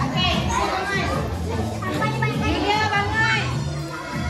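Young children's voices, calling and shouting over one another, with recorded music and a steady bass line playing underneath.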